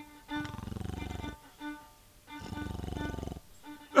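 Two long, rasping mock snores from a person's voice, each about a second, over quiet sustained fiddle notes.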